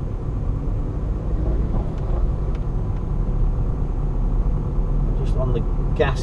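Steady low rumble of a car driving slowly along a street at about 15 mph, engine and tyre noise heard from inside the cabin.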